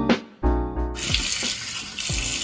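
A bathroom tap turned on about a second in, running water steadily into the sink basin for face rinsing, over background piano music.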